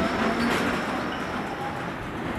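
Outdoor street ambience: a steady rushing noise with no clear single source, starting abruptly and easing off slightly over the two seconds.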